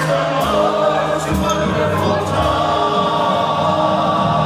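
Men's chorus singing, many voices together; the notes settle into a long held chord in the second half.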